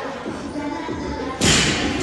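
A loud heavy thud about one and a half seconds in, ringing on in a large echoing gym hall, over background music and voices.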